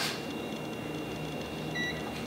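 A single short electronic beep from a CEM DT-9935 handheld LCR meter near the end, as a button on its keypad is pressed and the meter comes on.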